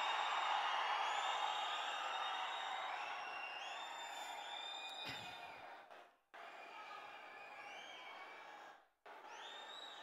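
Large crowd cheering and whistling, the noise slowly dying away under many short, sharp whistles. The sound cuts out briefly twice in the second half.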